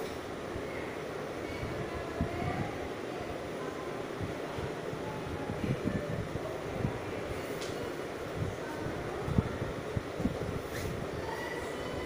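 Steady rumbling background noise with faint, irregular low knocks and no clear speech.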